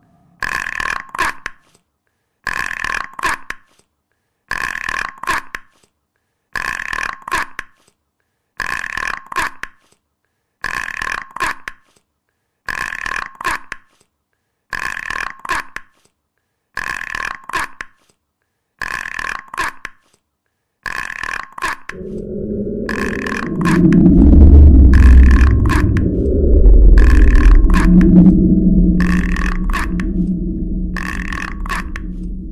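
A short, throaty, voice-like sound looped about once every two seconds, with silence between repeats. About two-thirds of the way through, a loud low rumbling layer comes in under the loop.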